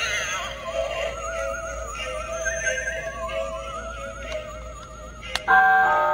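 Electronic Halloween decoration playing a ghostly, wordless melody through a small speaker, each note warbling with a heavy vibrato. Near the end a click, and a louder held chord starts from a light-up skull plaque as its button is pressed.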